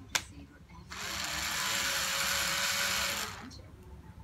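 A sharp click, then about two and a half seconds of steady hissing noise that starts and stops sharply.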